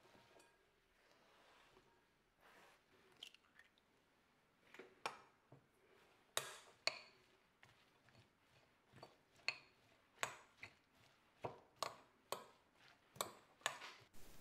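A metal fork clicking and scraping against a glass bowl as a bowlful of sliced spring onions is stirred: about a dozen light clicks, irregularly spaced, through the second half. At first there is only a soft rustle of the onion slices being tipped into the bowl.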